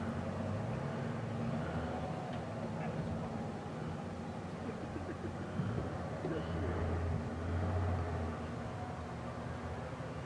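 Distant jeep engines crawling up a rock slope: a low, steady drone that swells between about six and nine seconds in.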